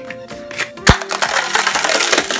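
A rubber balloon inside a dried, glue-stiffened yarn ball pierced with scissor points: a sharp click about a second in, then a loud hiss of air rushing out as it deflates instantly, a weird noise.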